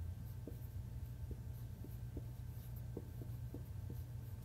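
Dry-erase marker squeaking on a whiteboard in short, separate strokes, about eight of them, as figures are written. A low steady hum runs underneath.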